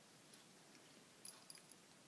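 Near silence, with a few faint small clicks from the binocular being handled, about a second and a half in.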